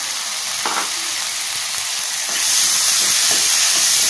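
Chopped tomato sizzling in a hot pan of tempering, a steady hiss that swells louder about two and a half seconds in.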